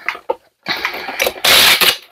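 Packing a small cardboard box by hand: a few short rustles near the start, then a continuous scratchy rustling from about half a second in that turns into a loud harsh rasp near the end.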